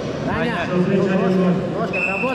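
Speech only: a man calling out "давай" ("come on") to a fighter.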